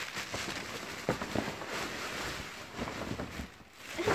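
Continuous rustling and crackling of clothing being handled and pulled on, with a couple of soft knocks about a second in.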